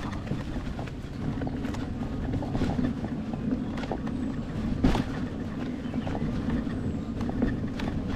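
Electric unicycle riding over a bumpy forest dirt trail: a steady low rumble of tyre and wind on the microphone, with irregular knocks and rattles from bumps in the path. The loudest knock comes about five seconds in.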